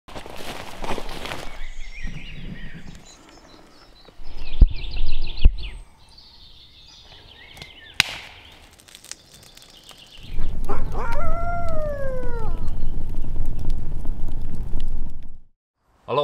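Footsteps through forest undergrowth with birds chirping, two heavy thuds about four and a half and five and a half seconds in, and a sharp crack near the middle. From about ten seconds a loud low rumble starts, with one falling call over it, and cuts off suddenly just before the end.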